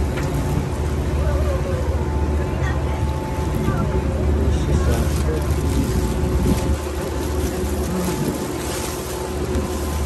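A small open passenger boat's motor running steadily under way, a constant low hum with a faint steady whine, over the rush of rough river water.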